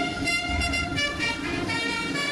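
Brass band music: a run of held brass chords that change every half second or so, with a low drum thud about halfway through.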